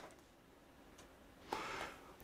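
Near silence, broken by a single faint click about halfway through as a desk lamp is switched on, then a short faint breathy sound near the end.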